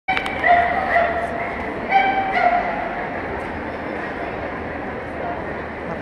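A dog yipping: a handful of short, high-pitched barks in the first two and a half seconds, over the steady chatter of a crowded hall.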